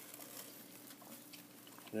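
Quiet room tone with a faint steady hum and a few faint light ticks.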